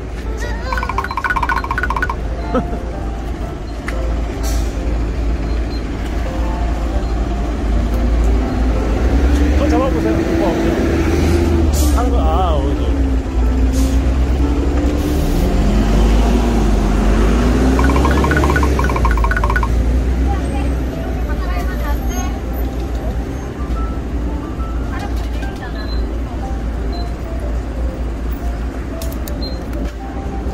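City buses running at a roadside bus stop: a deep engine rumble that swells through the middle, with a whine that rises and falls in pitch as a bus moves off.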